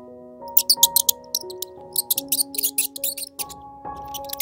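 Slow background music with long held notes. Over it runs an irregular string of short, high-pitched squeaks from a mouse caught in a wire-mesh cage trap.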